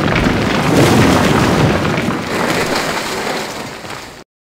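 Loud crumbling, rumbling sound effect of stone or concrete breaking apart. It fades over the last couple of seconds and cuts off just after.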